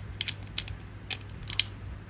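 Small, sharp metallic clicks, about half a dozen at irregular intervals, as a chrome Fender-style guitar tuning machine is turned and tightened by hand, over a low steady hum.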